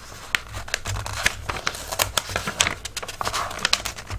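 Paper crackling and rustling in many short, irregular crackles as thin sheet-music pages are handled and lifted from a stapled book.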